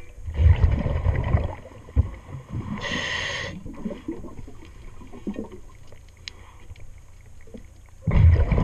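A diver's breathing regulator underwater: a burst of exhaled bubbles rumbling low, then a short hissing inhalation about three seconds in, with faint clicks and knocks in between.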